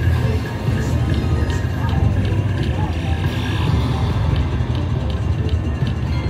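Video slot machine in its free-games bonus: electronic bonus music and spin sounds, with short ticks as the reels land, over a low casino hum.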